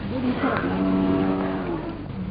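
A cow mooing: one long, steady call lasting over a second, dropping slightly in pitch as it ends.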